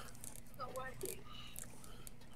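Quiet room tone with a low hum, and a brief faint murmur of a man's voice a little after half a second in.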